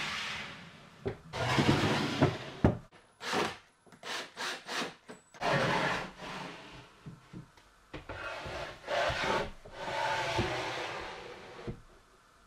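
Plywood drawers sliding wood on wood in and out of plywood cabinet openings, with no metal drawer slides: a series of rubbing slides, each half a second to a second and a half long, with a few light knocks in between.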